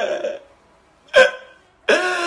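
A man crying loudly and sobbing: a wail trails off, a short sharp gasping sob comes about a second in, and another wail starts near the end.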